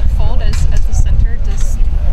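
A man's voice asking a question, over a constant low rumble.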